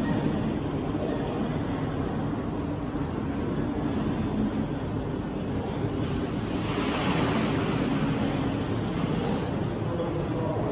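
Recorded ocean surf playing in a seashore diorama: a steady wash of waves, with one louder wave breaking about seven seconds in.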